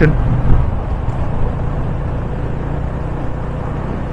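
Yamaha FZ25's single-cylinder engine running steadily as the motorcycle rides along at an even speed, mixed with a constant rush of wind and road noise.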